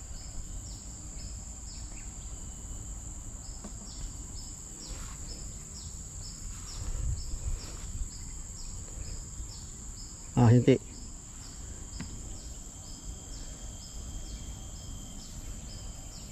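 Insects droning steadily at a high pitch, with a short chirp repeating about twice a second over it. A person's voice cuts in briefly about ten seconds in.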